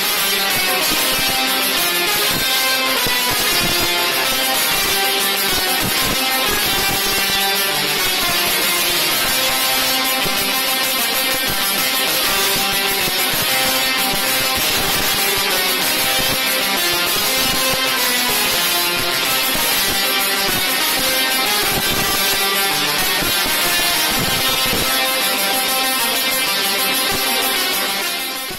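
Two six-foot musical Tesla coils playing a tune: the spark discharges vibrate the air into a buzzy melody of held notes that change pitch without a break.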